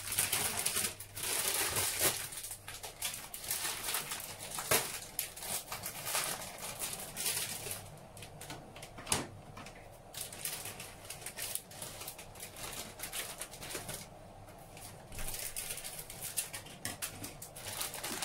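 Water in a stainless steel pot heating on an induction hob and coming to a boil: irregular crackling and popping of bubbles, with a few sharper clicks.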